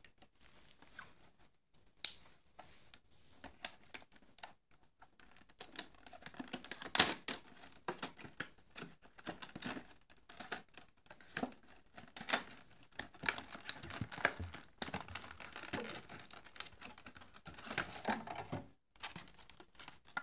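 Stiff clear plastic clamshell packaging being peeled and pried open by hand: crinkling and crackling with many irregular sharp clicks and snaps, the loudest snaps about two and seven seconds in.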